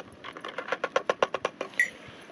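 German shepherd eating dry kibble from a small plastic bowl: a quick, even run of crunching clicks, about eight a second, with a brief high ring near the end.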